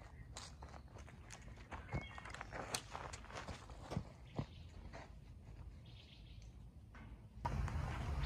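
Irregular footsteps with scattered light clicks over a low outdoor rumble. The rumble grows louder about seven seconds in.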